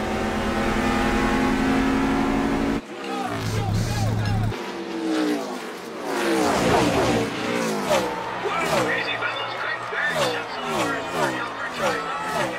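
Race car engines at speed. A steady high drone gives way abruptly about three seconds in to a run of cars passing one after another, each engine's pitch falling as it goes by.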